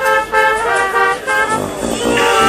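Brass band playing live: trombones and trumpets blowing a run of short, punchy repeated notes.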